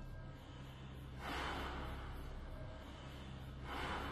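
Opening of the routine's performance music: a low sustained bass drone, with two swelling hiss-like sounds, one about a second in and one near the end.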